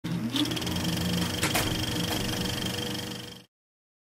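Mechanical sound effect: a fast, even clatter with a steady high whine, starting with a short rising hum and carrying one sharp click about one and a half seconds in. It cuts off abruptly a little before the end.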